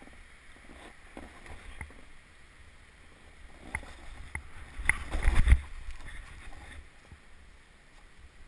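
Snowboard sliding and scraping over snow, with a few sharp knocks from about four seconds in and a louder rush of scraping just after five seconds.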